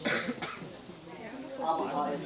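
A person coughs once sharply at the start, followed by speech in the room near the end.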